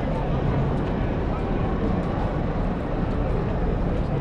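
Busy city street ambience: a steady low rumble of traffic with passers-by talking.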